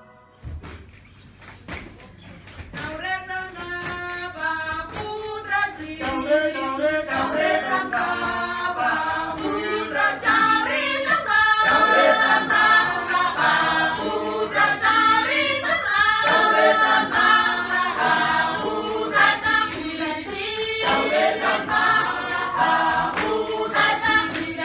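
A group of men and women singing together as a choir, several voices in harmony, starting a couple of seconds in.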